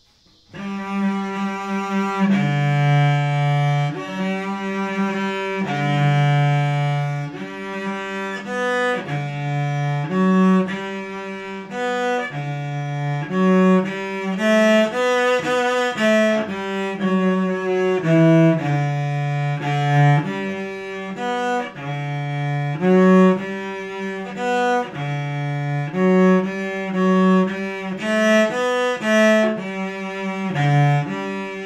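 Solo cello bowed, playing a slow melody of held notes, with a low note returning between higher phrases; it begins about half a second in.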